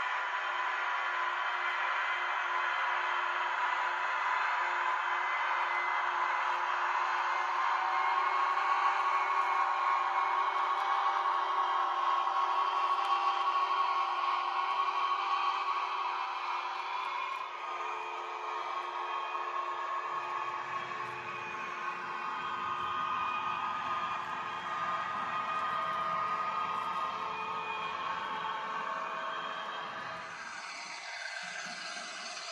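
N-gauge model trains running on the layout: a steady whir of small electric motors with wheel clatter on the track. About two-thirds of the way through the sound changes and a lower rumble joins in.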